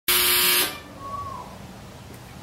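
A loud, buzzy horn-like blast with a steady pitch, about half a second long right at the start, then quiet room tone.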